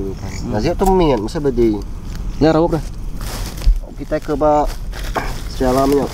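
A man's voice in short, unclear spoken phrases and murmurs, with scattered light clicks and a brief hiss about three seconds in.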